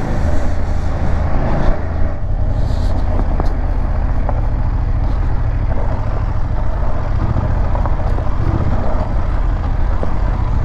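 Motorcycle engine running while riding, heard from the bike with heavy wind rumble on the microphone. The sound changes briefly about two seconds in.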